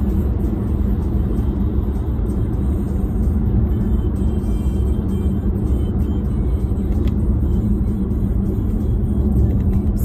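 Steady low rumble of a car's engine and tyres heard from inside the cabin while driving, with music playing along with it.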